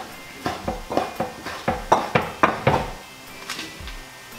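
Kitchen knife chopping shredded poached chicken on a wooden cutting board: a quick run of about ten knocks, roughly four a second, that stops near the three-second mark.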